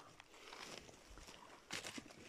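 Faint footsteps and rustling on dry leaf litter, with a louder rustle near the end.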